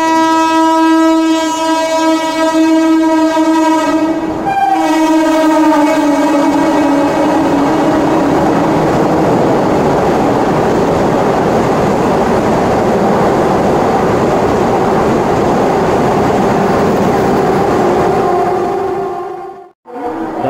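Vande Bharat Express electric train passing through the station, sounding its horn for about nine seconds with a short break about four and a half seconds in. After the horn stops, the rush of the train running past carries on, and it cuts off suddenly just before the end.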